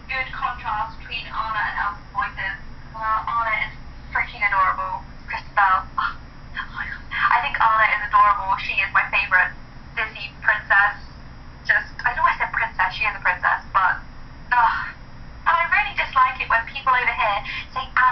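A young woman talking, played back through a phone's small speaker: the voice sounds thin and tinny, with no low tones.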